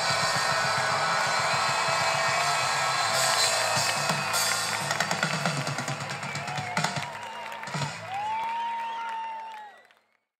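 Live band playing the closing bars of a song, drum kit prominent, thinning after about five seconds into scattered drum hits and one long held note, then fading out at the end.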